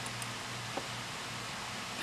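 Quiet indoor room tone: a steady low hum under an even hiss, with a few faint short clicks.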